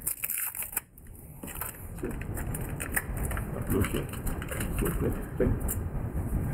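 Sticky rubber tire-repair plug strips being handled and pulled apart by gloved hands, an irregular crackling and crinkling.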